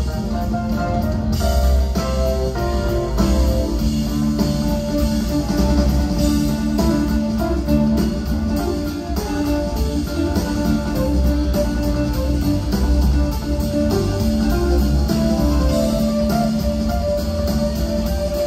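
Live rock band playing, with guitar over keyboards, bass and drums, heard from within the audience in the hall.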